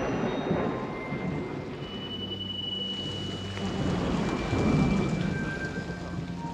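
Heavy rain pouring down steadily, with a rumble of thunder that swells about four to five seconds in.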